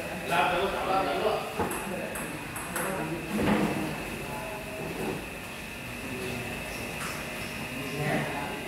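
Men's voices talking among table tennis tables, with a few short sharp clicks of table tennis balls being hit or bouncing.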